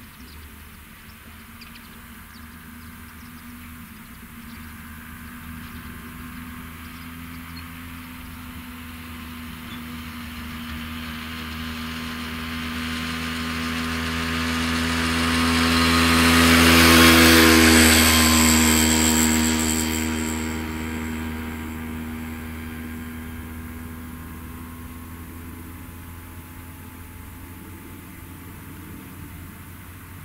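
Steady diesel engine drone of a ROPA Maus 5 sugar beet cleaner-loader working the clamp. A vehicle passes close by, swelling to its loudest a little past halfway and then fading.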